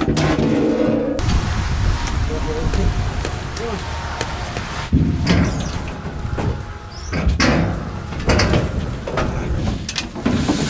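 Cattle being loaded from a steel sorting alley into an aluminum stock trailer: hooves on the trailer floor and metal panels and gates banging, with several loud clangs in the second half.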